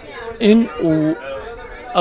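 Speech: a person talking, with chatter of other voices behind.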